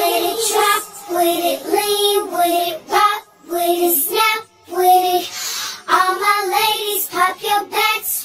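Pitched-up female vocal from a slowed, high-pitched edit of a tech-house track, sung in short repeated phrases with brief gaps over sparse backing that has almost no bass.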